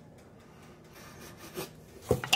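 Faint sniffing of an open jar of Branston Pickle held close to the face, with a brief louder sound about one and a half seconds in.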